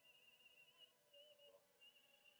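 Near silence, with a faint wavering high tone and a fainter low one beneath it. The high tone breaks off briefly twice.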